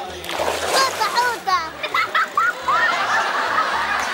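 A splash in the water about a quarter-second in, followed by short, high, swooping vocal sounds, over background music with a steady low beat.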